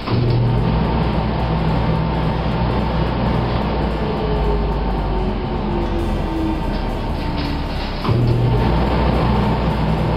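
3 HP dust collector's motor and blower running, a steady hum with a rush of air. A click and a jump in level come at the start and again about eight seconds in.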